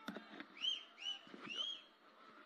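Faint bird chirps: three short calls, each rising and falling in pitch, a little under half a second apart. A single sharp click comes right at the start.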